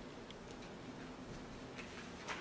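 Quiet meeting-room tone: a steady faint hiss and low hum with a few small, irregular ticks and clicks.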